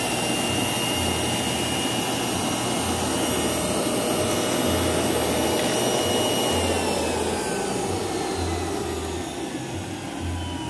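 Electric centrifugal juicer motor running steadily under load as carrots, cranberries and blueberries are pushed through its feed chute, with a whining tone over the noise. Near the end the whine sinks slightly in pitch and the sound gets a little quieter.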